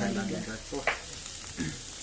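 Meat sizzling steadily in a tabletop grill pan, an even hiss under the table talk.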